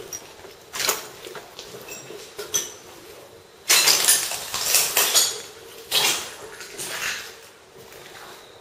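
Footsteps crunching and scraping over debris on a rubble-strewn floor, with clinks. The steps come irregularly, and the loudest crunching runs for about a second and a half from just before the middle.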